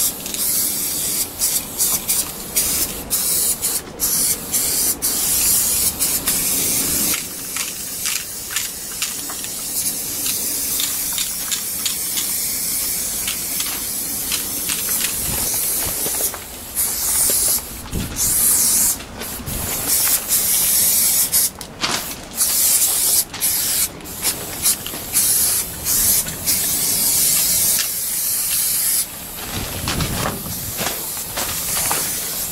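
Aerosol spray-paint cans spraying in bursts: many short spurts that cut off abruptly, and some sprays held for several seconds.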